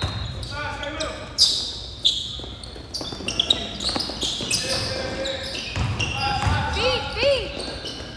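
Basketball dribbled on a hard gym floor, with sharp bounces, shoes squeaking twice near the end, and shouting voices echoing in a large hall.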